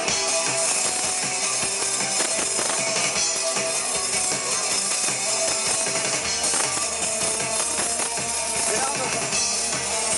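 Rock band playing live over a PA: electric guitars and drum kit, at a steady loud level.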